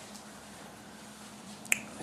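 Quiet room tone with a faint steady hum, and a single sharp click near the end.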